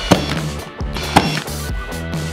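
Two sharp shots from a Ridgid cordless brad nailer driving nails into barn-wood siding, about a second apart, over background music with a steady beat.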